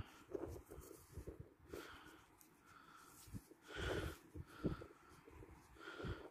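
A few faint breaths from a man, soft puffs about two seconds in, around four seconds and near the end.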